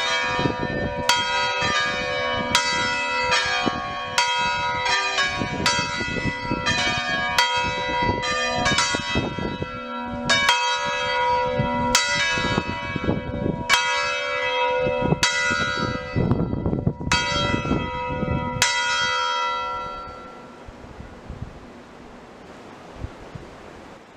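Swinging church bells of a four-bell ring in B (Si3), rung in a full peal: strokes follow one another irregularly, about every half second to second and a half, each ringing on over the next. The strokes stop near the end and the last notes hum away over a couple of seconds.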